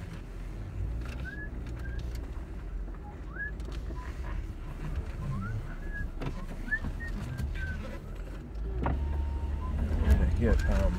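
Car driving, with a steady low engine and road rumble heard from inside the cabin that grows louder near the end. Short, high, rising chirps come and go over it.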